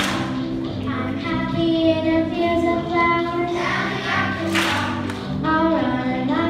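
A children's choir singing with instrumental accompaniment: held notes over a steady low backing. A few sharp percussion hits come in near the end.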